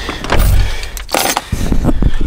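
Knocking and rustling as a person settles into a car's driver's seat with a coffee cup in hand: a dull thump about half a second in, a louder rustling burst just past halfway, then a few small knocks.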